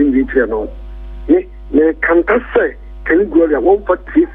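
Speech over a telephone line, cut off above about 4 kHz, with brief pauses about a second in and near three seconds. A steady electrical hum runs underneath.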